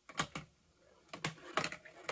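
A marble rolling down cardboard-tube ramps, a string of irregular light knocks and clicks as it hits the tube walls and drops from ramp to ramp.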